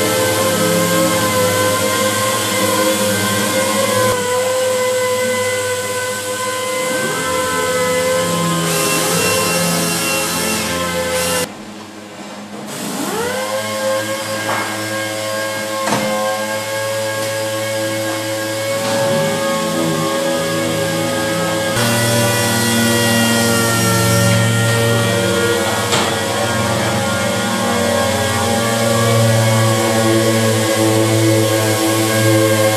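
Pneumatic orbital sanders running against a car body's paint, a steady whine of several pitches over a hiss. About eleven seconds in the sound drops briefly, then the tools start up again with rising whines several times.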